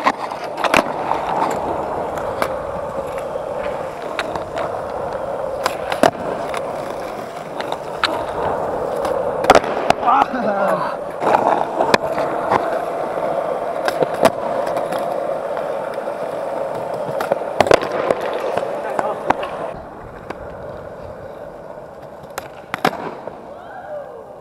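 Skateboard wheels rolling on smooth concrete, with several sharp clacks of the board striking the ground, pops and landings of tricks. The rolling eases off for the last few seconds.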